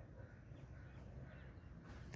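Near silence: faint repeated bird calls, crow-like, over a low steady hum.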